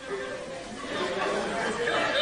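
Comedy-club audience murmuring, many voices at once, swelling over the two seconds.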